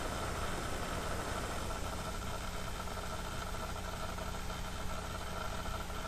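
Steady background hum with a faint high steady tone above it, unchanging throughout, with no clicks or knocks.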